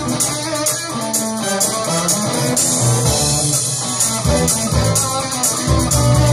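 A live rock band plays, with electric guitars over drums and an even cymbal beat. The deep bass drops away for the first few seconds and comes back in the second half.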